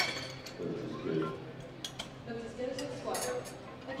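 Faint background voices in a competition hall, with a few light metallic clinks scattered through.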